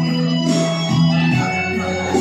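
Background music with sustained, organ-like held notes that shift in pitch about every half second.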